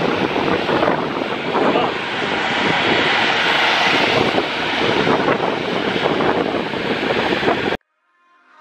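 Motor of a small pontoon boat running close by, with churning water and wind buffeting the microphone, a dense steady noise that cuts off suddenly near the end.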